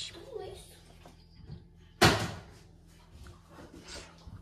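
A single sharp knock about two seconds in, with a short ringing tail, over quiet kitchen sounds of milk being poured from a plastic jug into a small glass measuring cup.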